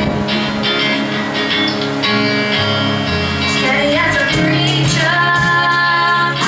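Live band with electric bass and drum kit playing a country song while a woman sings lead through a microphone, holding a long note near the end.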